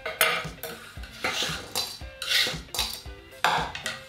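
Kitchen knife scraping and clinking against a stainless steel mixing bowl, in about four short scrapes roughly a second apart.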